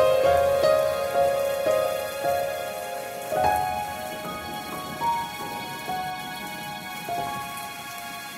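Calm instrumental background music: a slow melody of single sustained notes, gradually getting quieter, over a steady rain-like patter.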